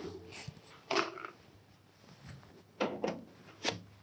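Several short knocks and clatters as a galvanized spiral ventilation duct is handled and its plastic end caps are pulled off, the loudest about a second in.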